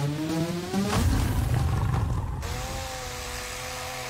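Abrasive cut-off saw grinding through metal, then its motor whining steadily in the second half, within a film soundtrack. A rising tone ends in a sudden hit about a second in.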